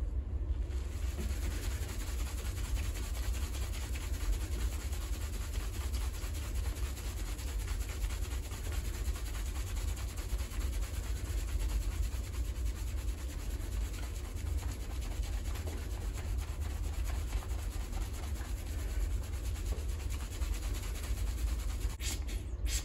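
Fingers vigorously scrubbing shampoo lather into wet hair and scalp: a continuous rubbing and squishing of foam, steady throughout, over a steady low rumble.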